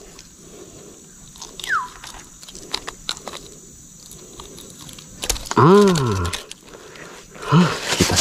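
Small clicks and rustles of a snakehead being unhooked with pliers and a metal lip grip. About five seconds in there is a loud, drawn-out vocal sound that rises and falls in pitch, and a shorter one comes near the end.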